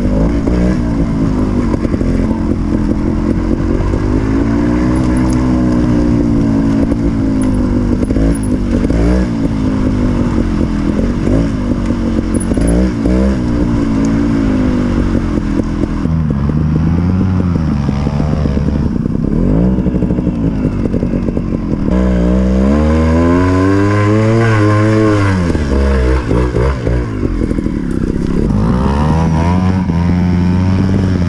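Single-cylinder two-stroke engine of a GasGas TXT 250 trials bike under way, its pitch rising and falling with the throttle. A longer, stronger rev climbs and drops about three-quarters of the way through.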